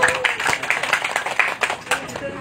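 A small group clapping by hand: irregular, overlapping claps of applause as a song ends.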